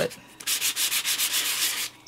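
Foam nail buffer block scrubbed lightly back and forth over embossed cardstock, sanding the raised pattern to bring out texture. The rapid scratchy strokes, about ten a second, start about half a second in.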